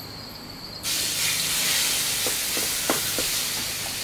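Curry paste dropped into hot vegetable oil in a wok: a loud sizzle starts suddenly about a second in and carries on, slowly easing, as the paste fries. A few light knocks sound over it.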